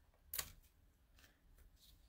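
Near silence, broken by a short click about a third of a second in and a faint scratchy rasp near the end: a handheld tape runner laying adhesive along the edge of paper.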